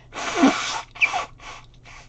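A woman blowing her nose into a tissue: one long blow, then three short ones. The blowing comes from seasonal sinus congestion.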